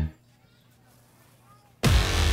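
Near silence, then a sudden loud boom near the end: a dramatic sound-effect hit that carries on into a low sustained tone.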